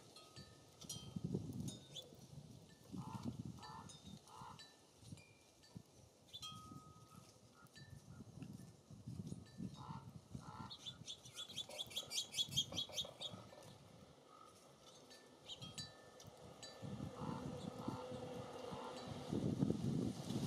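Wind gusting on the microphone at a bird feeder, with short clear calls from small birds and a rapid chattering series of high notes about eleven seconds in.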